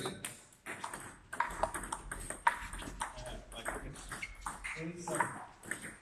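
Celluloid-type table tennis ball clicking off bats and bouncing on the table in play: a run of sharp, irregular clicks, the loudest about two and a half seconds in, with voices in the hall behind them.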